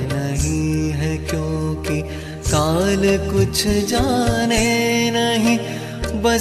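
Devotional song: a voice singing long, drawn-out, ornamented notes of a Hindi verse over instrumental accompaniment with a low sustained drone.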